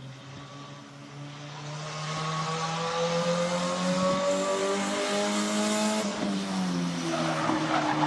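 A race car's engine approaching under acceleration, getting louder throughout. Its pitch climbs steadily, dips briefly about six seconds in, then climbs again.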